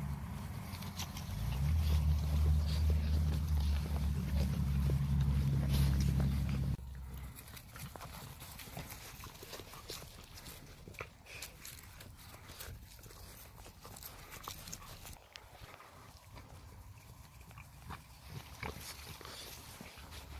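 A litter of American Bully puppies running across grass, with many small scattered taps and rustles of their paws. A loud low rumble fills the first seven seconds and cuts off suddenly.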